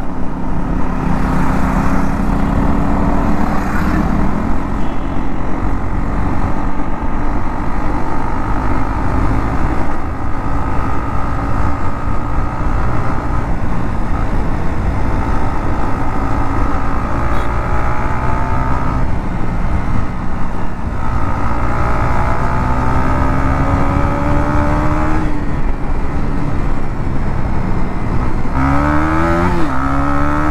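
Motorcycle engine running at road speed under a steady rush of wind noise. In the second half the engine note climbs in pitch several times as the bike accelerates, dropping back at the gear changes, the last near the end.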